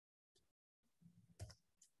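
Near silence, broken by a few faint clicks of a stylus on a tablet screen about a second and a half in.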